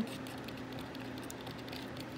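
Craft stick stirring thinned craft paint in a cup, heard as faint, irregular light ticks and scrapes of the stick against the cup.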